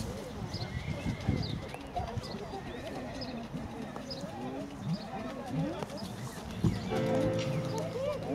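A horse's hoofbeats on a gravel track under indistinct background voices. Music with long held notes comes in about seven seconds in.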